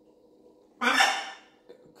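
Blue-and-yellow macaw giving one short, harsh squawk about a second in.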